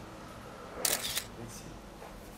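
A camera shutter firing once about a second in: a quick two-part snap over a faint room background.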